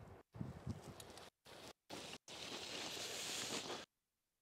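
Faint outdoor noise in short stretches, broken off several times by sudden dead silence where the footage is cut. A soft, even hiss rises about two seconds in and stops abruptly just before the end.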